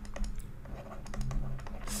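Light, irregular clicks and taps of a stylus on a pen tablet as handwriting is drawn, over a faint low steady hum.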